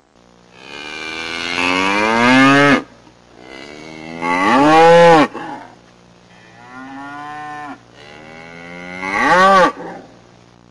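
A cow mooing four times in long, drawn-out calls, the third one much quieter than the rest.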